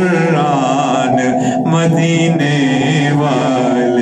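A man's solo voice singing an Urdu naat, drawing out long notes whose pitch wavers and bends in ornamented runs.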